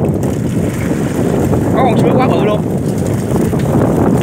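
A small fishing boat's engine running steadily, with wind on the microphone and a short wavering call from a voice about two seconds in.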